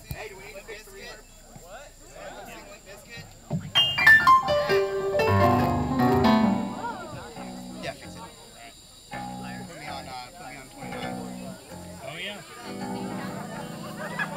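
Electronic keyboard played through an amplifier: a loud run of notes falling in pitch about four seconds in, then a string of short repeated chords. Voices murmur in the background.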